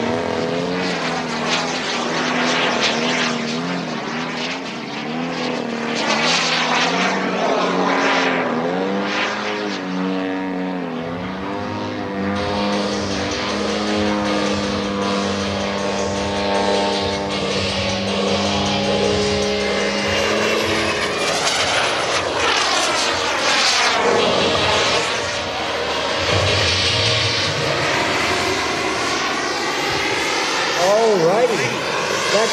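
Large radio-controlled model aircraft flying a display: an engine-and-propeller drone that swoops up and down in pitch as the models pass, holds a steady pitch for several seconds in the middle, and near the end gives a broad whooshing pass with a thin high whine.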